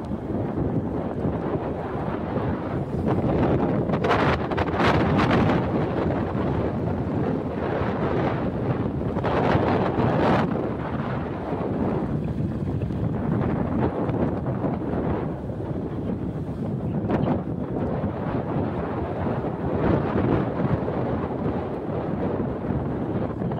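Wind rushing over the microphone of a camera on a moving vehicle, with road noise underneath; it swells louder in gusts about four seconds in and again around nine to ten seconds.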